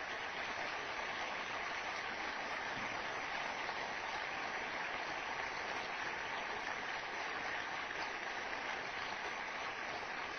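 An auditorium audience applauding steadily at the close of a lecture.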